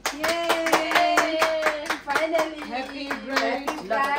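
Several women clapping their hands, a fast uneven run of claps. Over the claps a woman's voice holds a long note for about two seconds, then carries on in shorter, changing notes.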